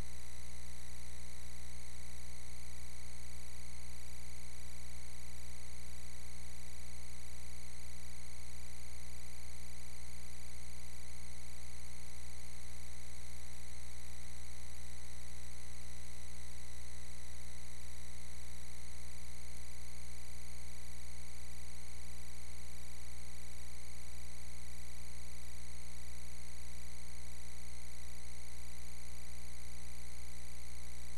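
Steady electrical mains hum with a buzzy edge and faint hiss, unchanging throughout, with no music or voices over it.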